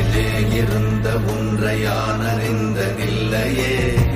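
Background Tamil devotional song: a sung vocal over a steady low drone.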